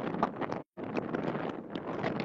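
Wind buffeting the microphone, a dense rushing noise, with a brief total dropout about two-thirds of a second in.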